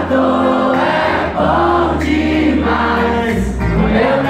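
Live pop band with acoustic and electric guitars and a steady bass playing a slow song, while many voices sing the held melody together.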